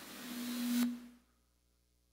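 A man's breath drawn in close to the microphone, swelling and cutting off sharply under a second in, over a short steady low hum that fades just after. The sound then drops to silence.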